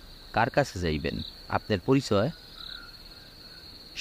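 Crickets chirring in a steady, high, even trill, laid under a man's voice narrating in Bengali for the first half.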